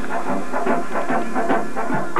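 Marching band of brass and drums playing a tune in short, quick notes.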